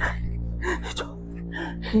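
Background music of low, steady held tones, over which a man gasps sharply several times in shock, then cries out a short 'hey' near the end.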